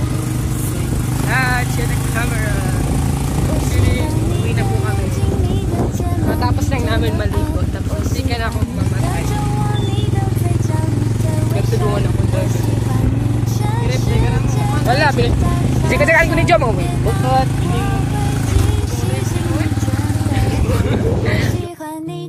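Small motorcycle engine running steadily under way, a low hum with voices over it, cutting off suddenly near the end.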